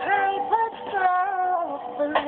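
A recorded song: a woman sings a drawn-out melodic line that slides between notes and holds one long note in the middle, over a musical accompaniment.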